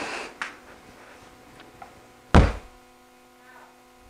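A single fist bang on a door, one dull heavy thump about two seconds in: a test blow meant to set off a door vibration sensor.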